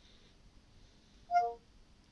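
A short two-note falling chime from a smartphone's speaker, played by the Cortana voice-assistant app after a spoken question, about one and a half seconds in. Otherwise near silence.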